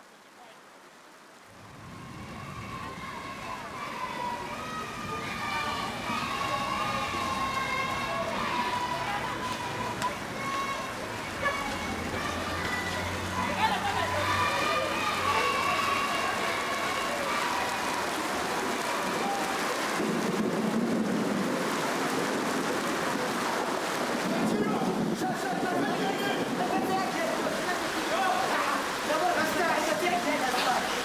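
Voices singing a slow, held melody over a steady hiss like rain, fading in over the first couple of seconds.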